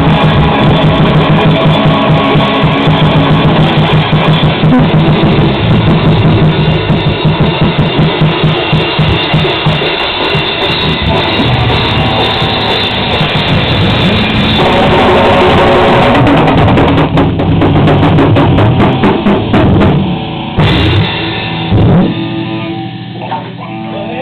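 Rock band playing live with electric guitars and a drum kit, loud and dense. Near the end the band breaks into a few separate accented hits, and the last chord rings out and fades as the song finishes.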